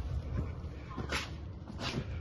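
A front door being pushed open, then footsteps and scuffing as someone walks in, with a few short swishes and a low rumble of handling noise.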